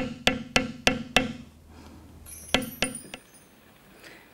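Metal beveling stamp struck with a mallet as it is walked along a cut line in dampened leather: a quick run of sharp taps, about three and a half a second, stopping after about a second, then two more taps a little past halfway.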